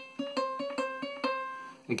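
Ukulele notes sounded by fretting-hand pull-offs and hammer-ons, swapping between two close pitches about five times a second and dying away near the end.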